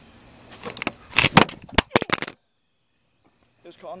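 A quick run of loud, sharp knocks and clattering close to the microphone, typical of the camera being picked up and bumped. The sound then cuts out entirely for about a second before faint sound returns near the end.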